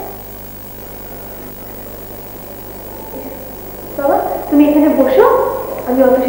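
Steady low mains hum and hiss on an old video soundtrack, then a person's voice speaking briefly from about four seconds in.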